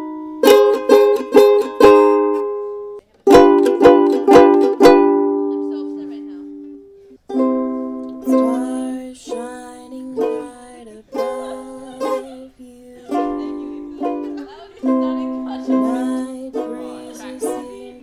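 Ukulele strumming chords: two short runs of strums, the second left to ring out. From about seven seconds in, a voice sings over steady ukulele strumming.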